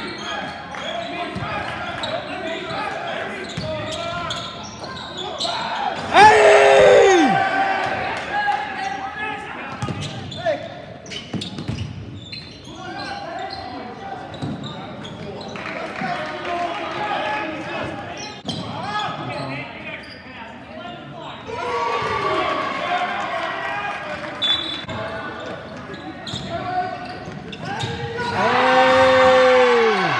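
A basketball game in a reverberant gym: the ball bounces on the hardwood floor, and players and spectators call out. A loud shout about six seconds in falls away in pitch, and a long cheer near the end rises as a player dunks.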